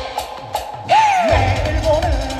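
Live pop-dance music played loud through a stage PA. The kick-drum beat drops out briefly, a sudden swooping pitched glide comes in about a second in, and then the steady kick-drum beat returns.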